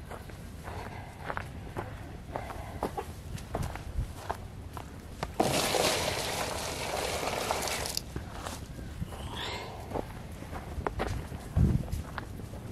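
Footsteps and small knocks on dry ground, then about five seconds in a loud rush of water poured into a pan for roughly two and a half seconds. A low thump near the end.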